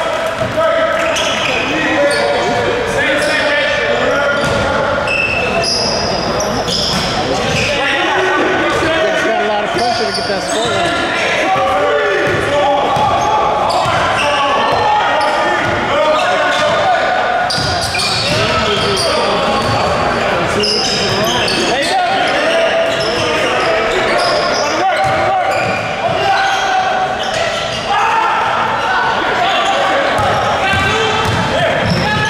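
Basketball bouncing on an indoor court floor during a game, with repeated dribbles and thuds. Indistinct voices call out throughout, echoing in a large gym hall.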